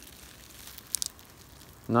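Faint crinkling of plastic bubble wrap as a bundle of RCA cables is handled in it, with a couple of short, sharp crackles about a second in.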